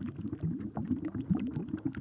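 Low-pitched, irregular bubbling and gurgling ambient sound effects, the underlying sound bed of a molecular animation, with faint scattered ticks.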